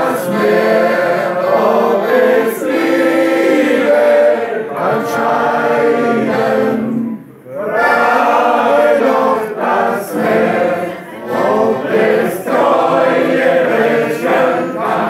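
A group of people singing a song together, with accordion accompaniment. There is a brief break between lines about seven seconds in, then the singing picks up again.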